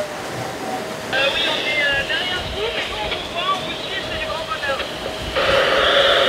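Handheld VHF marine radio receiving: a thin, band-limited, garbled voice comes through its speaker. About five seconds in, a loud burst of radio static hiss lasts about a second.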